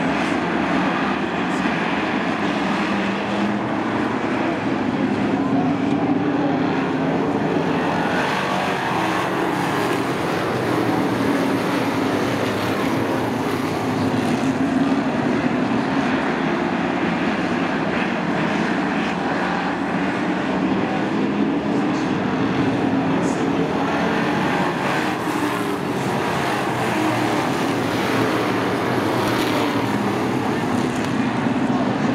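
A full field of Sportsman stock cars racing together on a short oval, their engines running at high revs in a loud, steady drone whose pitch swells and dips as the pack sweeps around the track.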